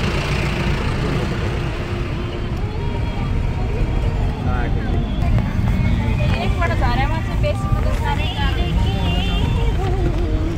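Steady low rumble of a car's engine and road noise, heard from inside the vehicle, with voices over it from about four seconds in.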